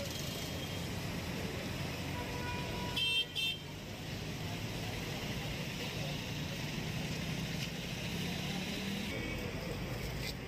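Road traffic noise with a vehicle horn giving two short, high-pitched toots about three seconds in.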